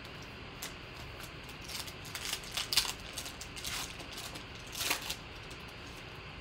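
Foil trading-card pack wrapper torn open and crinkled by hand: quick crackling clicks from about two to four seconds in, and again briefly near five seconds.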